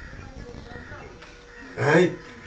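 Low room noise during a pause in a man's talk, then a man's voice starts again loudly near the end.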